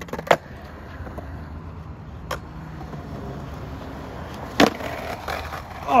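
Skateboard wheels rolling on concrete with a steady low rumble, after the board clacks down onto the ground at the start. There is a sharp clack about two seconds in and a loud one a little before the end.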